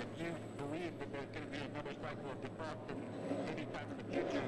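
Faint distant voices over a low steady hum, with scattered light clicks and knocks throughout.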